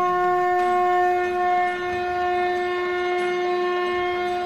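Intro music: one long, steady note on a wind instrument, its pitch unchanging, over a fainter wavering lower tone.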